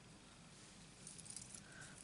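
Near silence: room tone, with faint light rustles and ticks from about halfway through as a paper flower is handled.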